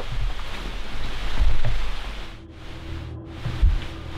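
Wind rumbling on a handheld camera microphone, with rustling in woodland undergrowth, loudest about a second and a half in. A steady low hum comes in about halfway.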